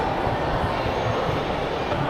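Steady rushing background noise of a metro station, with no distinct events.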